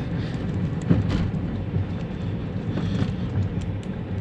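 Car engine and tyre noise heard from inside the moving car's cabin, a steady low rumble, with a short knock about a second in.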